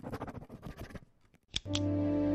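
About a second of faint, rapid scratchy clicking. After a short silence come two sharp clicks, and a soft music cue with a low held drone and sustained tones fades up near the end.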